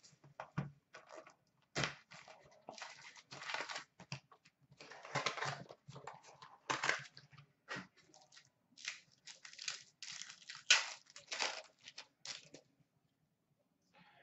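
Hockey card pack wrappers being torn open and crinkled, with cards rustling in the hands: irregular rips and crackles that stop shortly before the end.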